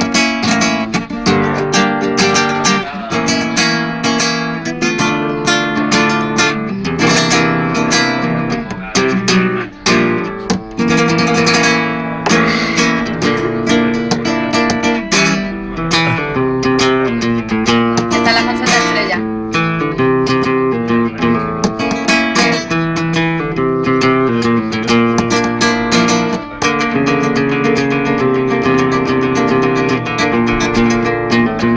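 Flamenco guitar played solo in the bulerías style: sharp strummed chords mixed with plucked melodic passages.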